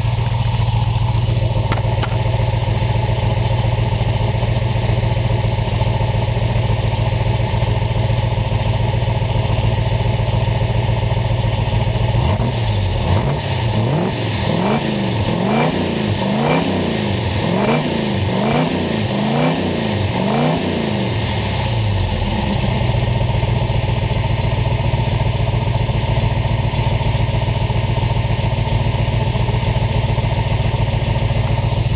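1966 Ford Mustang K-code's solid-lifter 289 High Performance V8 idling steadily through its exhaust, heard close behind the car. About midway it is revved in a run of quick blips, a little more than one a second, then settles back to idle.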